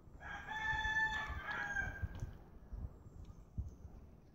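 A rooster crowing once, a single call of about two seconds that drops slightly in pitch toward its end. Soft low thumps sound under it.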